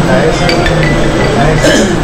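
Indistinct voices with several short, sharp clinks, a louder cluster of them near the end.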